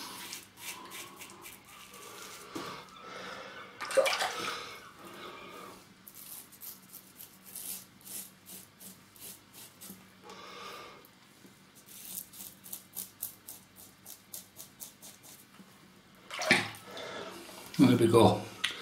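Rockwell 6S safety razor with a Wilkinson Sword blade on its mildest plate, scraping through three days' stubble in runs of short, quick strokes that give a dry scratching. A louder noise comes about four seconds in and again near the end.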